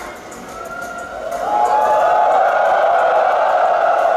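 Large arena crowd of fans screaming and cheering, swelling up about a second in and staying loud.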